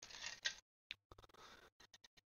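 Faint crinkling of a clear plastic bag as plastic model-kit parts trees are handled, with a few light clicks of the plastic parts.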